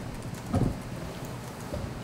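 Quiet meeting-room tone with one short, low thump about half a second in.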